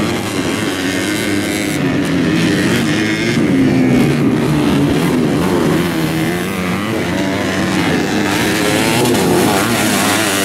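Several dirt bike engines revving in a race, their pitches rising and falling as the riders work the throttle over the rough track.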